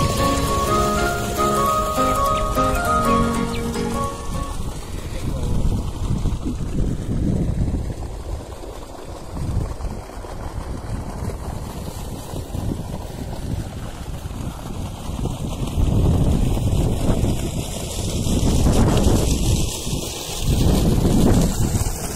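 Background music ending about four seconds in, then outdoor wind buffeting the microphone, a rough low rumble rising and falling in gusts.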